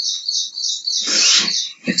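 A bird chirping rapidly in the background, high short chirps about five a second, which stop about a second in; a brief rush of noise follows.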